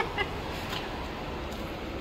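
Steady low hum of workshop background noise, with a couple of faint light knocks in the first moments as things are handled on the steel bench.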